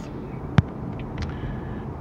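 Steady low road and engine rumble inside a moving car's cabin. A single sharp click sounds about half a second in, followed by two faint ticks just after a second.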